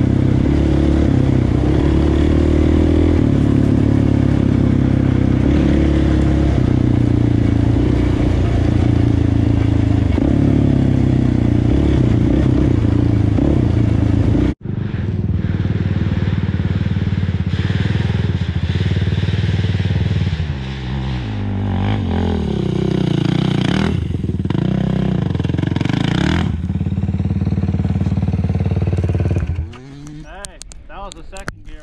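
Sport quad's engine running hard on a rough trail, the pitch stepping and shifting with throttle and gears. The sound breaks off sharply for an instant about halfway through. After that the engine goes on with several revs up and down.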